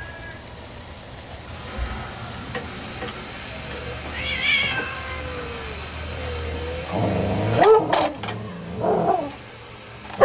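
Sausages and flatbread sizzling on a charcoal grill, a soft steady hiss. About seven seconds in it gives way to a cat meowing a few times, loud and arching in pitch.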